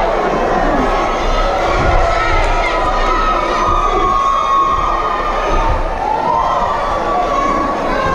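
Boxing crowd cheering and shouting, many voices at once, with some long held shouts in the middle.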